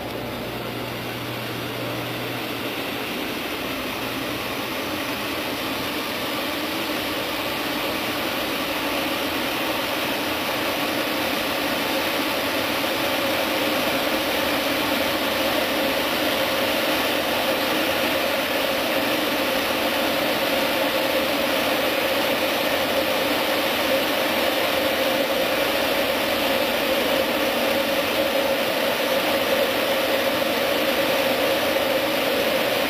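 Steady whirring machine noise from a running Vitronics XPM3 820 reflow oven, growing gradually louder as its hood rises open. A low hum is heard in the first few seconds, and a steady mid-pitched tone comes up in the second half.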